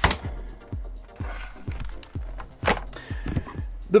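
Hard plastic rear shell of an all-in-one computer handled and set down on a bench: a sharp plastic knock at the start, smaller clacks, and another sharp clack nearly three seconds in, over background music with a steady beat.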